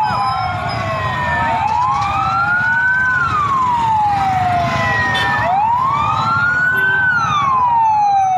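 Several ambulance sirens wailing together, each rising and falling slowly in a cycle of about four seconds, out of step with one another, over the low rumble of the moving vehicles.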